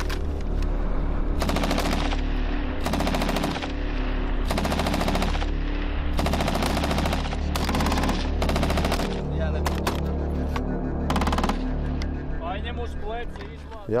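Automatic rifle fire in about half a dozen short bursts of rapid shots, spread across several seconds of live-fire training.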